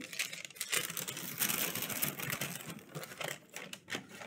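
Brown paper bag rustling and crackling as a rolled-up item is pushed down into it, a run of dry crinkles busiest in the middle.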